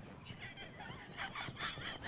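Faint, breathless laughter with squeaky high-pitched wheezes in short pulses, from people laughing hard without voicing it.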